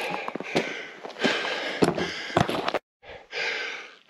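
A hiker breathing hard on a steep climb: three long, heavy breaths, with footsteps crunching on loose scree between them. The sound cuts out briefly near the end.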